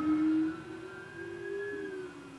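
A siren wailing: a single drawn-out tone that climbs slowly, then starts to fall away near the end.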